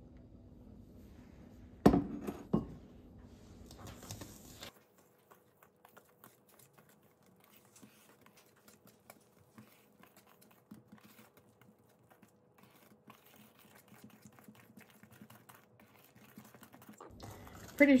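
Small wire whisk stirring thick cornbread batter in a stainless steel mixing bowl: a long run of faint small clicks and scrapes. About two seconds in come two sharp clinks as the wet ingredients are scraped out of a glass bowl into the steel one.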